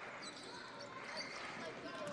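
Basketball game sound in a gym: a ball being dribbled on the hardwood court over a low, steady murmur from the crowd.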